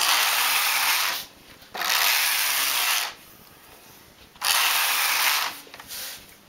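The hand-pushed carriage of a domestic flatbed knitting machine sliding across the needle bed three times, a second-long sliding rattle on each pass, knitting a row with each stroke.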